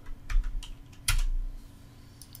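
Computer keyboard keystrokes and mouse clicks, a handful of separate sharp taps, the loudest about a second in, as a value is entered in the CAD software and the dialog is confirmed.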